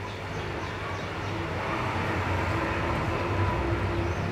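Water sloshing in a glass aquarium as a hand swirls it to mix in medicine, growing a little louder in the second half, over a steady low hum.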